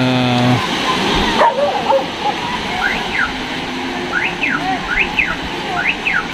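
Small waves breaking and washing up a sandy beach, a steady rush of surf. Several short high squeals that rise and fall in pitch come through it in the second half.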